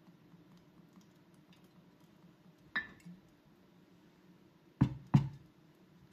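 Olive oil trickling faintly from a glass bottle into a glass jar of chopped sage leaves, with a light glass clink about three seconds in. Near the end come two sharp knocks, glass on wood, as the bottle is set down on the wooden cutting board.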